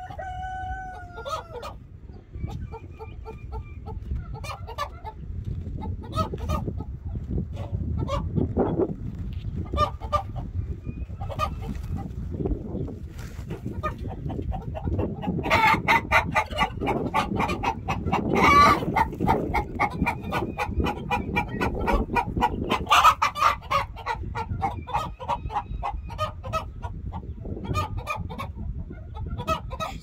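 Chickens clucking and squawking, with a rooster crowing. A held call comes near the start, and the calls grow louder and more crowded through the middle.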